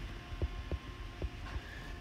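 A few faint light taps of a stylus on a tablet screen as a word is handwritten, over a steady low electrical hum.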